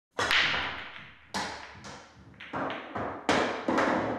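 Pool break shot: the cue ball smashes into the rack of blackball pool balls just after the start with a loud crack, followed by about half a dozen sharper clacks as the scattered balls hit each other and the cushions.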